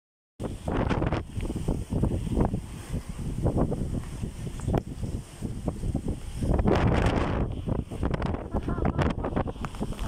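Strong tropical-cyclone wind buffeting the microphone in uneven gusts, the heaviest gust about seven seconds in.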